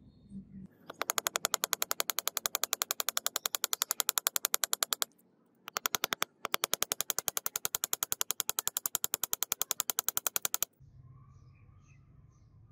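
Rapid, evenly spaced mechanical clicking, about nine clicks a second. It runs for about four seconds, breaks off, comes back in a short burst and then a longer run, and stops suddenly near the end.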